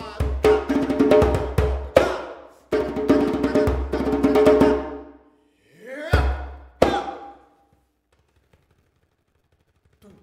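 Hand-played Meinl djembe, sharp slaps and deep bass strokes, with the player chanting loudly over the drumming. After a rising vocal call and one last stroke about seven seconds in, drum and voice stop for a pause.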